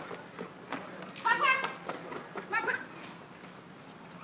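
Two short, high-pitched cries about a second apart, the second rising in pitch.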